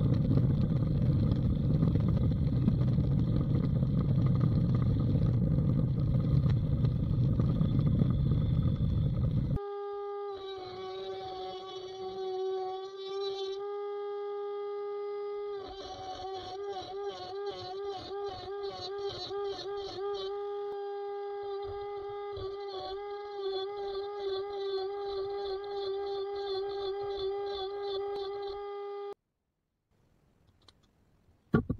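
A drill press running with a sanding attachment inside an oak mug: a loud, dense, steady machine noise. About ten seconds in this gives way to the quieter, steady whine of a smaller electric motor, wavering as the turning mug is sanded, which stops just before the end.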